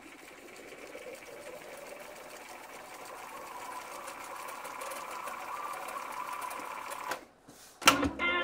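Astra 111s-1 reel-to-reel tape recorder fast-winding its tape: a steady mechanical whir with a faint whine that slowly rises in pitch and grows louder as the reels speed up. The whir stops about seven seconds in, and a sharp click of a transport key follows near the end.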